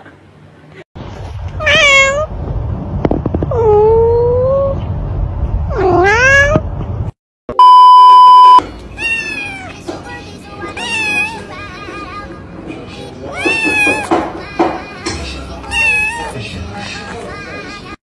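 A small kitten meowing repeatedly, short high calls that drop in pitch, about one a second through the second half. They come after a loud steady electronic beep lasting about a second, which is the loudest sound, and a few drawn-out calls over a low rumble at the start.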